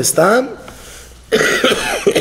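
A man coughs once, about a second and a half in, after a few spoken words.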